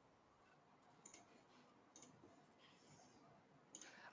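Near silence with a few faint computer mouse clicks, spaced about a second apart.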